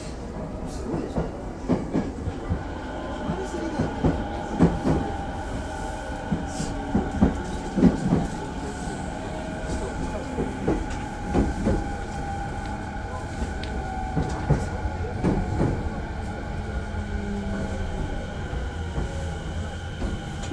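Inside a moving electric commuter train: a steady low rumble with irregular clacks and knocks of the wheels over the rail joints, and faint steady whining tones over it.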